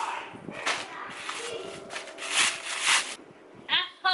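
Rustling and scraping as a pair of sandals is handled and pulled onto the feet: several short bursts, the loudest two a little past the middle. A short vocal sound comes near the end.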